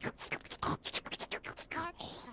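Voice effects of a puppet vacuum cleaner: a fast run of short, noisy sucking and snuffling sounds, ending in a brief pitched squeak.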